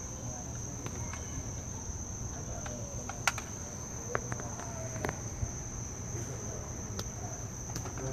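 Steady high-pitched buzz of insects, with a few small sharp clicks from the hand tool stripping 12-gauge wire ends, about three, four and five seconds in.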